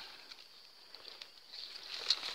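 Faint rustling and a few light clicks of a utility knife slitting open the plastic grafting tape wrapped round a durian graft, over a steady high insect buzz.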